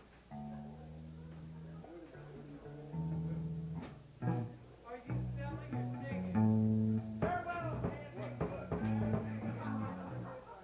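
Live band instruments sounding scattered held notes, not yet a song, getting louder about three seconds in, with a voice over them in the second half.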